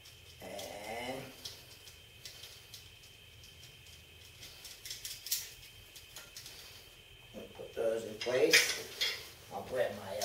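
Light metallic clicks and clinks of small bolts, nut, washer and tools being handled while a reflector is fitted to a bicycle's rear fender bracket. Brief voice-like sounds come about half a second in and again near the end, the loudest of them toward the end.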